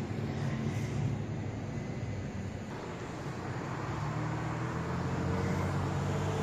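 Street traffic noise with a steady low engine hum, growing a little louder toward the end.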